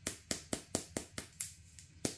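Long acrylic nails clicking against a plastic concealer tube, a quick, even run of about four or five clicks a second.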